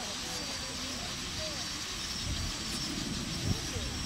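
Faint, distant voices over a steady low rumble, with a couple of short low thumps near the end.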